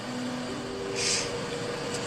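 Soft background music of long held notes that step to a new pitch, under a pause in the talk, with one short breath about a second in.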